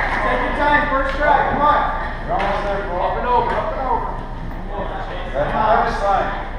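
Indistinct voices of several people talking and calling out at once, with a few short knocks.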